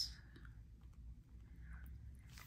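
Faint scratching and light ticks of a gel pen writing on planner paper, over a low steady hum.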